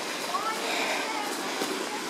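A faint, distant voice briefly about half a second in, over a steady outdoor hiss.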